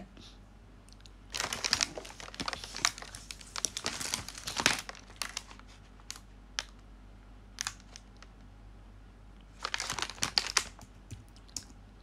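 Rustling and tapping handling noise close to the microphone, in two spells of quick clicks and crinkles with a couple of single clicks between.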